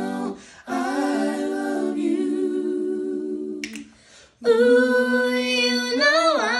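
Four boys singing a cappella, holding wordless notes in close harmony. The sound breaks off briefly about half a second in and again around four seconds in, then a louder held chord comes in.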